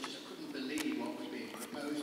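A man speaking into a handheld microphone in a hall: committee-meeting speech.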